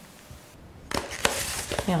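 Handling noise: a rustling hiss with a few sharp clicks and knocks, starting about a second in, then a woman says "Hier" right at the end.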